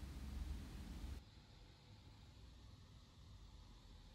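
Faint steady hiss with a low rumble: room tone only. It drops abruptly to near silence about a second in.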